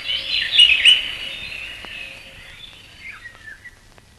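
A flock of cartoon hummingbirds chirping and twittering as it flies away: a dense cluster of high chirps in the first second, thinning to a few scattered chirps and fading out near the end.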